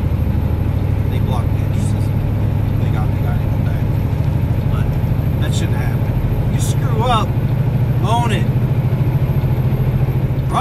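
A semi truck's diesel engine running steadily under way, heard from inside the cab as a loud, even low drone.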